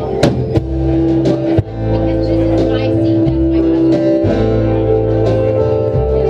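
Live indie folk band playing: acoustic and electric guitars, upright bass and drums, with a voice singing over them. Several sharp drum hits fall in the first second and a half under steady held notes.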